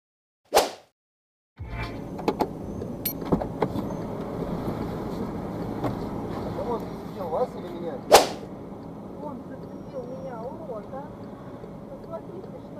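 Dashcam audio from inside a car in slow traffic: a steady cabin rumble with scattered clicks, starting about a second and a half in after silence. Two short, sharp, loud bangs, one about half a second in and a louder one about eight seconds in.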